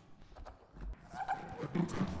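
Electroacoustic computer music built from granulated voice in Kyma: dense crackly clicks and short fragments of vocal sound with brief pitch glides, growing louder.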